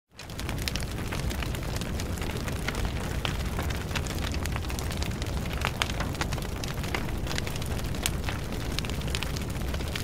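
Steady rumbling noise scattered with many small crackles and pops.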